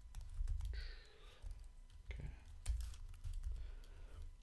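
Computer keyboard typing: irregular single keystrokes clicking, with short pauses between them.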